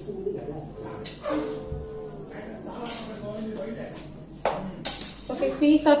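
Faint, indistinct voices in a room, then several sharp clicks and clatters in the last second and a half, as a spoon knocks against a metal pressure cooker.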